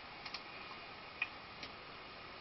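Laptop keys clicking: four scattered clicks over a faint steady hiss, a quick pair near the start and the loudest a little past the middle.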